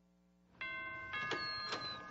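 Distributor logo sting: bell-like chime notes struck four times, starting about half a second in, each ringing on, over a faint hum.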